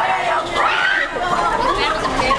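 Several young people talking over one another: indistinct chatter.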